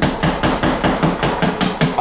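Hammer rapidly tapping the butt of a utility knife to punch it through drywall, about seven sharp knocks a second.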